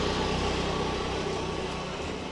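A motor scooter's small engine running steadily close by, a low hum that eases slightly as it moves off, over general street noise.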